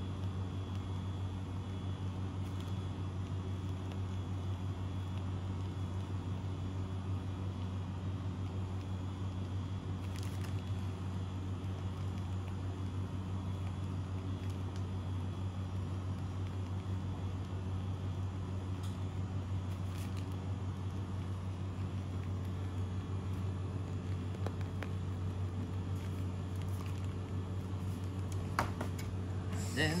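Steady low hum of kitchen machinery running, with a few faint clicks.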